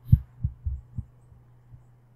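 Four soft, low thumps in the first second, over a steady low electrical hum.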